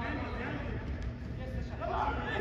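Players' voices calling out during a soccer match, unclear shouts at the start and again near the end, over a steady low rumble.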